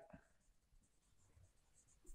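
Very faint squeaking and rubbing of a marker pen writing on a whiteboard, barely above near silence.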